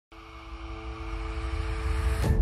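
Logo-intro sound design: a low rumble under two sustained tones, swelling steadily in loudness as it builds toward the logo reveal.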